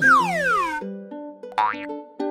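Cartoon sound effect: a long whistle-like glide falling in pitch over the first second, then a brief rising glide about one and a half seconds in, over light background music with held notes.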